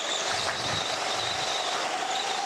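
A go-kart heard onboard, running with a steady whine over a noise of motor and tyres. The whine rises slightly in pitch about halfway through as the kart picks up speed.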